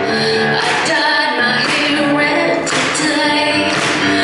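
A woman singing a slow song to her own grand piano accompaniment, sustained sung notes over piano chords.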